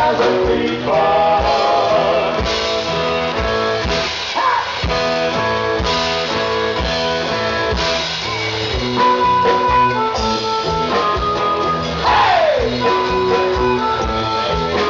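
Live rock band playing an instrumental passage of a song, with electric guitar over a steady drum-kit beat. A lead line of held notes slides down in pitch twice, about four seconds in and again near twelve seconds.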